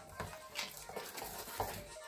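A metal spoon stirring thick, wet cornmeal batter in a stainless steel mixing bowl, with a few faint scrapes and clicks against the bowl.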